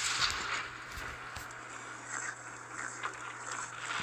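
Sound effects from an animated robot battle playing back: a steady, noisy rush that comes in suddenly and slowly fades, with a few faint knocks, over a constant low hum.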